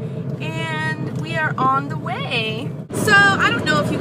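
Steady, really loud highway road noise inside a moving car's cabin, a low hum and rumble of tyres and engine, under a woman's voice.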